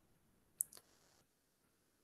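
Near silence: room tone, with one short sharp click just over half a second in.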